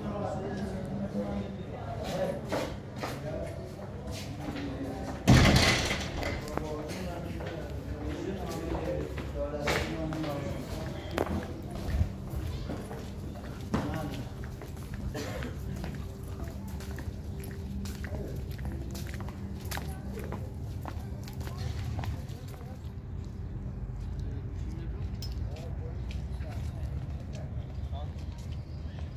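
Indistinct voices and footsteps, with scattered clicks and one loud sharp knock about five seconds in.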